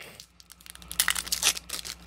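A foil booster-pack wrapper from a Disney Lorcana trading card set being torn open by hand, a crackly run of crinkling and tearing that starts about half a second in.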